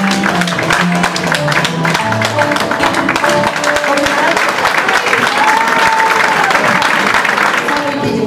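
Fado accompaniment on Portuguese guitar and classical guitar, fast picked notes, with audience applause swelling from about three seconds in as the song closes.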